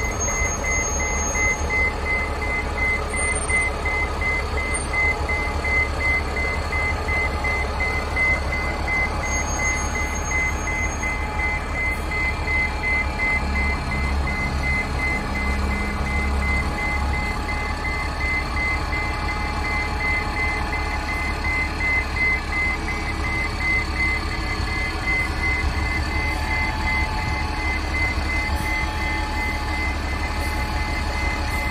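A transit bus's reverse alarm beeping at an even pace as the bus backs up, over the steady low running of its engine.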